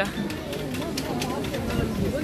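Babble of a dense crowd of pedestrians, many voices talking at once with no single one standing out, and a few light clicks.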